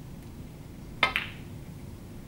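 Snooker shot: the cue tip strikes the cue ball and the cue ball clacks into the blue a split second later, two sharp clicks about a second in, the second ringing briefly.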